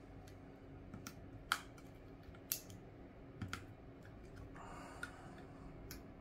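Small, irregular clicks and taps from handling an opened iPhone XR and its display assembly, about half a dozen sharp clicks with a brief soft rustle near the end.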